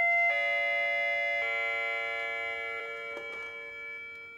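Doorbell chime ringing out in descending notes: a new, lower note about a third of a second in and another about a second and a half in, each left to ring and fade. A short click a little past three seconds in as the door intercom handset is lifted.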